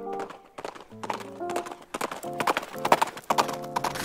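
Galloping horse hoofbeats, a fast run of clip-clop strikes that comes in about a second in and grows louder toward the end, over background music with held notes.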